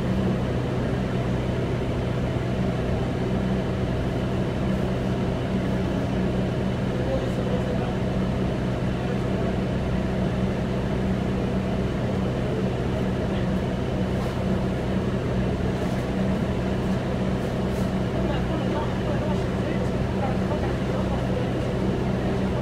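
Steady idle of a New Flyer C40LF city bus's CNG engine, heard inside the cabin while the bus stands at a stop, with an even low hum.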